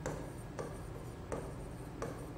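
Hand-writing on a board: a run of short scratchy strokes with a few sharp taps as letters are written.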